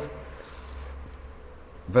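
A pause in a man's speech filled by a faint, steady low hum with a thin steady tone above it, like room or recording-system hum. Speech resumes at the very end.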